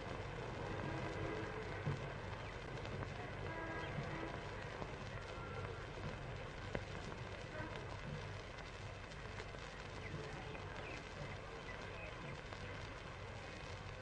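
Faint outdoor ambience of a gathering standing in a moment of silence: a steady low hum and hiss from an old film soundtrack, with faint scattered sounds from the surroundings and a few small clicks.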